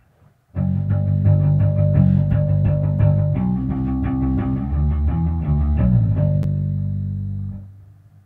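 Electric bass guitar played through an amp: a riff of plucked low notes that starts suddenly about half a second in and stops just before the end.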